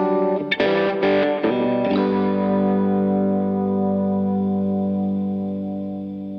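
Instrumental music on guitar: a few quick plucked notes, then a chord about two seconds in that rings on and slowly fades away.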